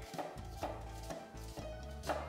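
Chef's knife dicing a half onion on a wooden cutting board, each drawn cut ending with a light knock of the blade on the wood, at about two cuts a second.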